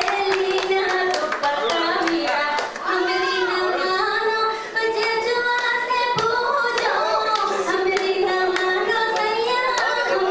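A woman singing a song solo into a microphone in long held notes, with the audience clapping along in time throughout.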